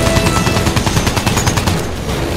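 Machine-gun fire sound effect: a rapid, continuous rattle of shots, as from a World War I fighter plane's guns.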